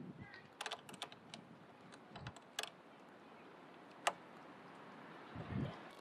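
A few scattered, faint metallic clicks of a small wrench working a car battery terminal as the battery cable is reconnected, with one sharper click about four seconds in.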